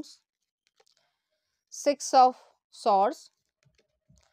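A woman's voice saying a couple of short words after nearly two seconds of near silence.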